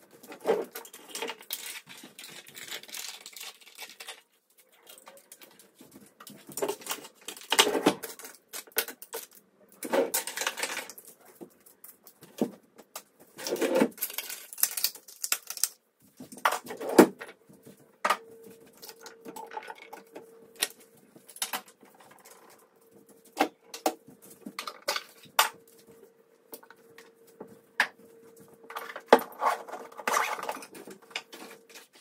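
Small toiletries and containers handled and set down on a bathroom counter and in a drawer: irregular clicks, knocks and rustles. A faint steady hum comes in just past halfway and carries on to the end.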